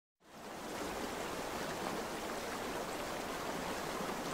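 Water of a rocky creek running over a small cascade: a steady rush that fades in within the first half-second.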